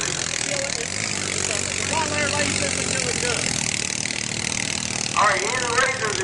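ATV engine idling steadily under a general hiss of crowd noise, with people's voices talking briefly about two seconds in and again near the end.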